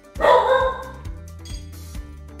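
A dog gives one short bark, a high yelp of about half a second, a quarter of a second in, over background music with a steady beat.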